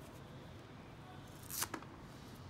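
Folding knife blade slicing through a piece of thick black fabric: one short rasp about one and a half seconds in, otherwise faint background.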